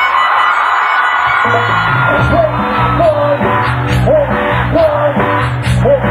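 Live cumbia band playing on a keytar and electric guitar. The bass and drums drop out for about the first second, then the full band comes back in with a steady beat and a short swooping note repeated about once a second.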